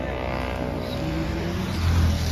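A motor vehicle's engine running close by, growing a little louder near the end.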